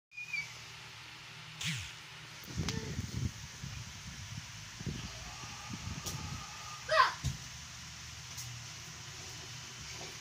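Dogs play-fighting and mouthing each other, with low growls and grunts coming and going, and a short high yelp about seven seconds in, the loudest sound.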